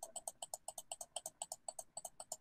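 Rapid, steady clicking of a computer mouse, about seven faint clicks a second, as a font-size arrow is clicked over and over.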